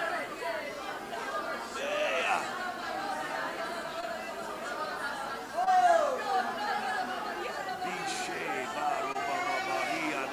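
Many people praying aloud at once, their voices overlapping with no single voice leading. One voice rises briefly louder about six seconds in.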